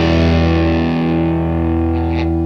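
Rock music: a distorted electric guitar chord held and ringing out, its high end slowly fading.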